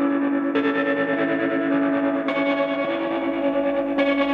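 Instrumental post-rock: sustained, effects-laden electric guitar tones with echo over a steady held low note. The harmony shifts about half a second in and again a little past two seconds, with no drum hits.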